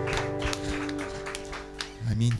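A worship band's last chord ringing out and fading away, with repeated hand claps over it.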